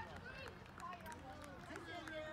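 Faint background chatter of several overlapping voices, with no single speaker close by.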